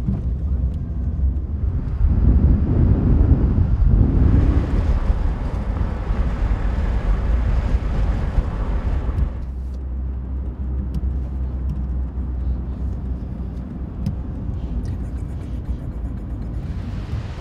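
Cars driving along a road: a steady low engine and tyre rumble with a rushing noise that swells for several seconds in the first half, then settles back.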